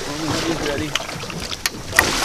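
Indistinct voices over steady wind and water noise on a boat, with a few sharp clicks in the second half, the loudest near the end.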